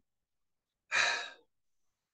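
A woman's single audible breath about a second in, lasting about half a second.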